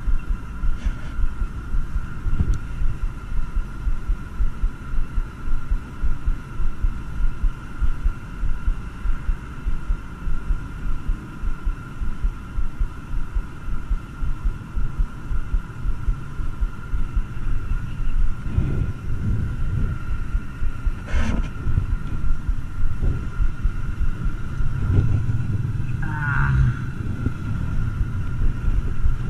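Low fluttering rumble of wind buffeting the microphone of a body-worn action camera, under a faint steady high tone. A couple of sharp knocks come about two-thirds of the way through.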